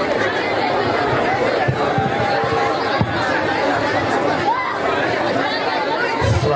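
Crowd chatter: many voices talking over one another at a steady level, with no single speaker standing out.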